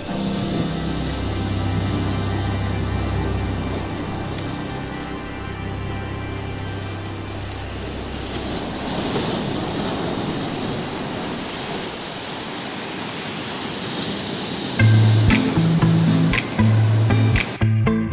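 Sea surf breaking and washing over a rocky shore, a steady rush, with background music under it. About fifteen seconds in, the music turns to a beat-driven passage of plucked, separate bass notes.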